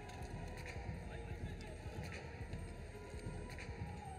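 Faint ice-arena ambience: a low murmur of crowd and voices with a few light clicks.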